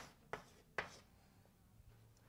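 Faint strokes of someone writing out a worked equation, three short scratchy taps in the first second, then near quiet.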